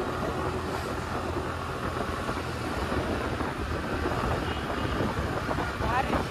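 Suzuki Access 125 scooter's single-cylinder engine running under throttle as the scooter accelerates, with steady wind rushing over the microphone. The tank is on its last drops of petrol.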